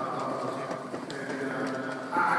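Gospel choir and band performing live: a quieter passage of held chords with light, steady percussion ticks.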